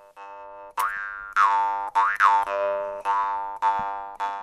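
Jaw harp played as a drone: a steady buzzing tone whose overtones swoop up and down, struck again about every half second from just under a second in.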